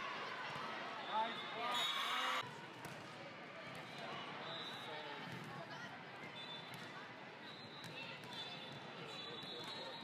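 Volleyball play in a large sports hall: voices of players and spectators calling out, a sharp ball contact about a second in, then a short burst of loud shouting. Short high-pitched sneaker squeaks on the court floor come now and then through the rest.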